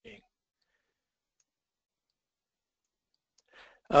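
Near silence in a pause between spoken sentences, broken by a faint click at the very start and another faint short sound shortly before speech resumes at the end.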